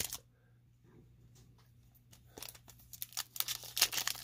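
Foil wrapper of a 2019 Topps Gallery baseball card pack being torn open and crinkled by hand, starting about halfway through and getting louder toward the end.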